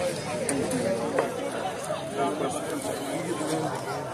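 Indistinct chatter of several people talking at once, with no one voice clear.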